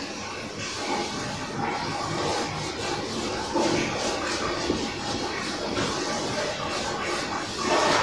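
A hand-held duster wiped back and forth across a whiteboard: a steady rubbing hiss made of many quick, repeated strokes.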